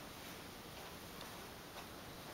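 Faint, irregular ticks or clicks over quiet room tone.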